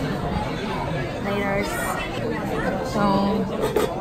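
Indistinct chatter of several voices in a busy restaurant dining room.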